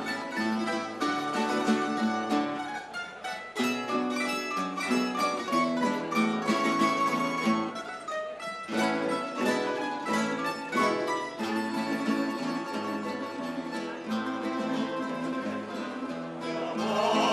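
Instrumental music on plucked string instruments, a steady run of picked notes over chords.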